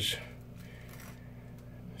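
Quiet room tone with a steady low hum; no distinct clatter or scraping stands out.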